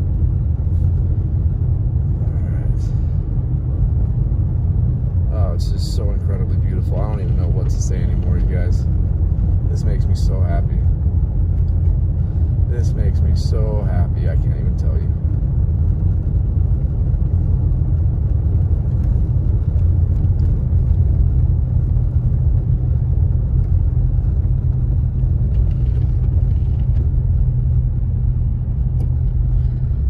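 Steady low rumble of a Subaru driving slowly on a snow-covered road, heard from inside the cabin. Some wavering pitched sounds come in between about 5 and 15 seconds in.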